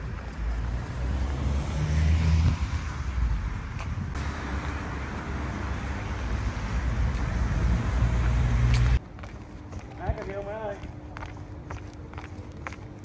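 Wind buffeting the microphone in gusts: a loud, uneven rumble and rush that cuts off abruptly about nine seconds in. It gives way to much quieter outdoor sound with a brief voice and light footsteps.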